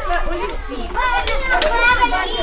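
A group of young children chattering and calling out over one another, with a couple of sharp clicks past the middle.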